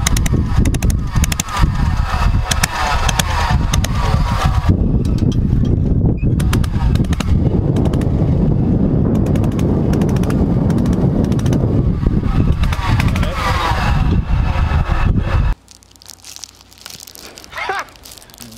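Golf cart rattling on a rough dirt track, with rapid knocks and a heavy low rumble on the microphone, and voices mixed in. The sound cuts off abruptly about three-quarters of the way through.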